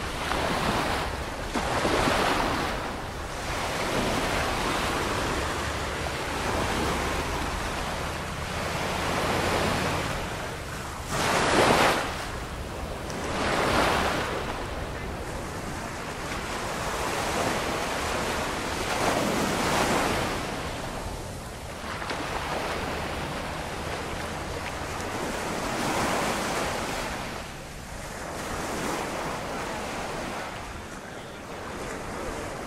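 Small ocean waves breaking and washing up a sandy shore, the surf swelling and fading every few seconds, with the loudest surge about a third of the way in. Wind on the microphone adds a low rumble.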